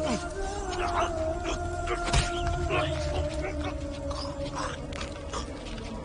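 A long, held howling cry that sinks slowly in pitch, with repeated sharp hits of fight blows through it.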